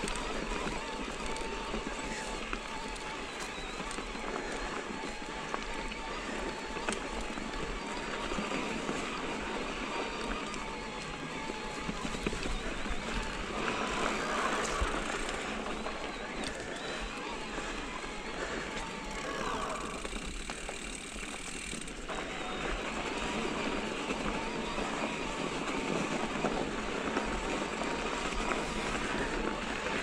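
Mountain bike being ridden along a dirt singletrack: steady tyre noise over dirt and leaf litter, with frequent small rattles and clicks from the bike.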